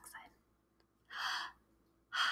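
A woman breathing out audibly once, a little over a second in, a short breathy rush of air without voice, as a demonstration of exhaling.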